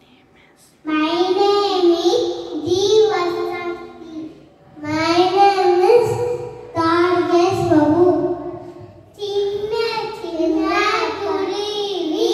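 Young children singing a nursery rhyme into a handheld microphone, in short sung phrases with brief pauses between them, starting about a second in.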